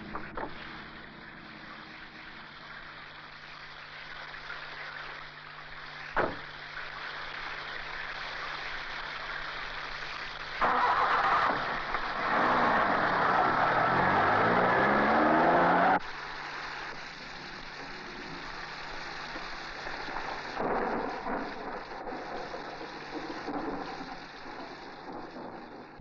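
Heavy rain falling steadily. There is a single sharp knock about six seconds in, like a car door shutting. A car engine then runs and rises in pitch as the car pulls away, much louder for about five seconds before dropping back under the rain.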